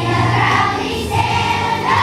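A group of young children singing a song together as a choir, holding each note for about half a second before moving to the next.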